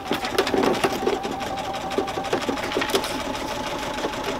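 Home exercise machine running under steady use: a fast, even mechanical whir made of rapid fine ticks with a steady hum. Paper rustles about half a second in as the pages of a paperback book are turned.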